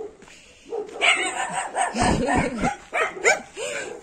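Dogs barking aggressively: a rapid run of barks starting about a second in and going on to the end.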